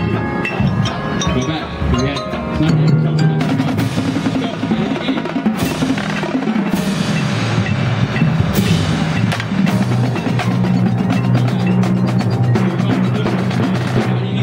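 Marching band percussion section playing: snare and tenor drums in rapid stick patterns with bass drums, over sustained low pitched notes from the mallet keyboards of the front ensemble.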